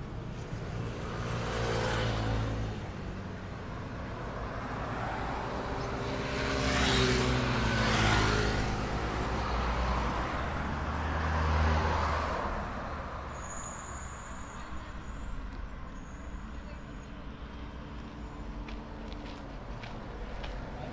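Road traffic on a city street: cars passing by one after another, swelling and fading, loudest about two, seven to eight, and twelve seconds in.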